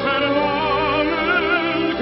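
Operetta music: a singer's voice with a wide vibrato over orchestral accompaniment, one held, wavering line.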